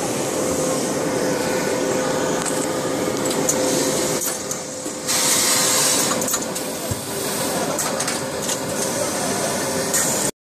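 Automatic garment bagging machine running in a busy exhibition hall: a steady hum with scattered clicks, and a louder hissing burst about five seconds in.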